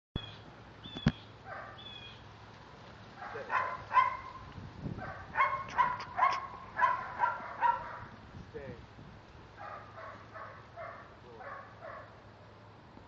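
A dog barking in runs of short, sharp barks, about two a second, loudest in the middle and fainter again near the end.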